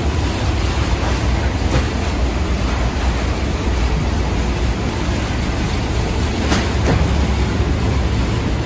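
Steady low mechanical rumble with a hiss over it, with a few faint knocks about two seconds in and twice near the end.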